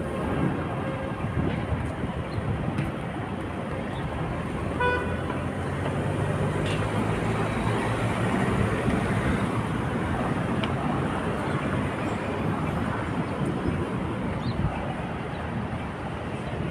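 Busy city street traffic: a steady wash of passing cars, with a heavier vehicle rumble swelling in the middle. A short car-horn toot sounds about five seconds in.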